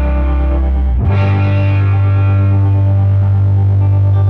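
Instrumental passage of a heavy stoner-rock track: distorted electric guitar holding long chords, shifting to a new, lower-anchored chord about a second in.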